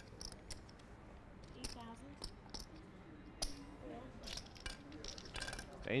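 Poker chips being handled at the table, clicking together in scattered light clicks.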